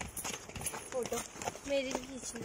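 Light footsteps on a path, a few soft irregular steps, with a faint voice near the end.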